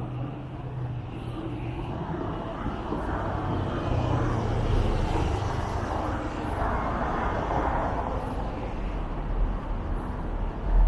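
Street traffic: a car passing close by, its tyre and engine noise swelling to a peak about seven seconds in over a steady low rumble.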